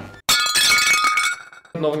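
A sudden glassy clink with high ringing tones that fade out over about a second.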